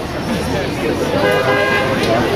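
A steady horn tone sounds for about a second, starting about halfway in, over crowd chatter and voices.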